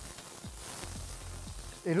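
Chicken, chorizo and corn frying in oil in an electric skillet, a steady sizzle as they are stirred around the pan with a slotted spatula.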